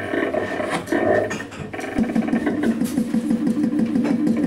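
Free-improvised jazz played live by alto saxophone, double bass and drums, in rough, noisy textures with scattered drum and cymbal strikes. About halfway through, a rapid fluttering low pulse comes in.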